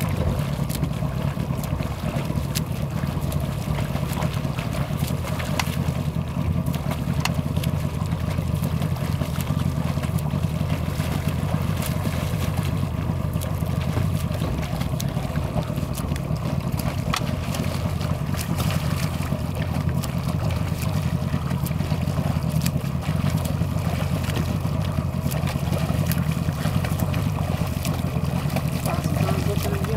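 A small boat's motor running steadily at low speed, a constant low hum, with the light splashing of front-crawl arm strokes breaking the water.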